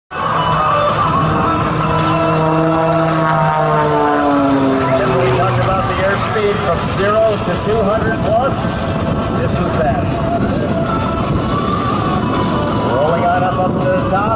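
Propeller-driven aerobatic airplane's engine running at high power during a vertical smoke-trailing climb, its drone falling in pitch over the first few seconds, then holding steady.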